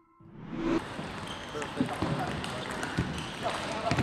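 Table tennis ball clicking off bats and table in a rally, a sharp click about every half second from about two seconds in, over the murmur of voices in a sports hall.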